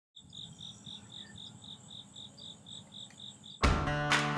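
Insects chirping in a steady rhythm of about four high chirps a second, with a thin, steady, higher insect trill behind. Near the end, loud guitar music cuts in suddenly.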